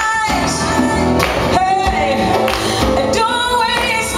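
Live band performance: a woman singing, holding long notes, over conga drums and band accompaniment.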